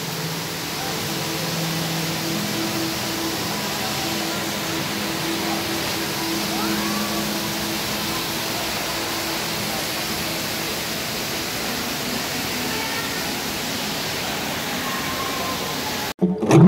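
Steady rushing ambient noise of an indoor exhibit hall, with faint distant voices and a low held tone under it.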